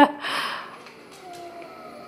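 A woman's laugh trailing off into a breathy exhale, then a quieter stretch with a few faint, wavering tones.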